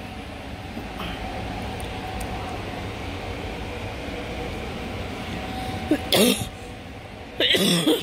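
Steady low indoor background hum, then a woman coughs about six seconds in and again near the end.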